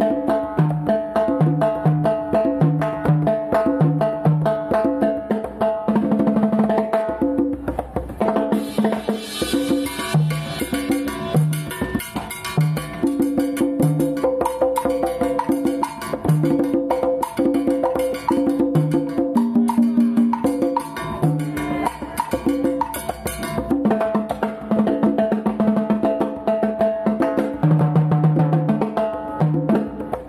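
Live Latin-style instrumental of timbales and sharp percussion strikes over keyboard chords, with a bass line repeating on a steady beat.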